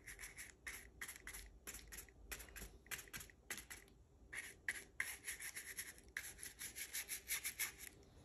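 Paintbrush bristles scrubbing paint onto cardboard: faint, rapid, short scratchy strokes, several a second, with a brief pause about halfway through.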